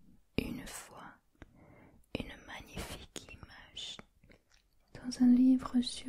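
A woman whispering in French close to the microphone, reading aloud, her voice turning soft and voiced about five seconds in.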